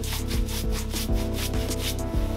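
Repeated scratchy strokes of a stiff round paintbrush dragged across the painted wooden side of an end table, dry-brushing a faux linen texture, over background music with a steady beat.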